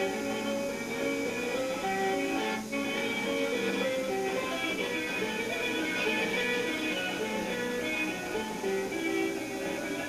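Live folk music: strummed plucked string instruments playing, with a voice singing over them.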